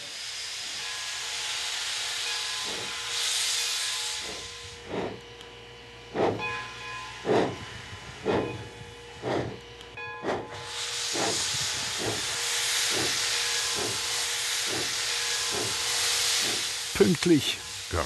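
Steam locomotive No. 18, a 1914 Baldwin, starting away with its train: a loud hiss of steam from the open cylinder cocks, then exhaust chuffs that come steadily faster, from about one a second to nearly two a second.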